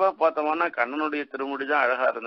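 Only speech: a man's voice talking without pause.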